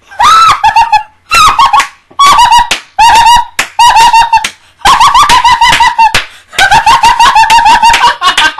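A woman's loud, very high-pitched excited screaming, in a string of short shrieking bursts with brief pauses between them.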